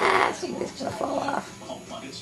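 A kitten gives a harsh, noisy hiss while play-fighting with another kitten: one loud burst right at the start, then a shorter one about a second in.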